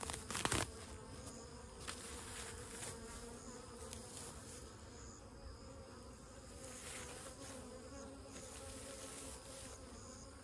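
Honey bees buzzing in a steady hum around the hive. A brief rustle about half a second in, as the grass beside the hive is handled.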